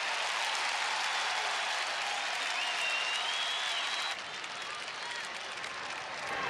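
Ballpark crowd applauding and cheering, with a high whistle wavering through the noise in the middle. About four seconds in the crowd noise drops to a quieter hum.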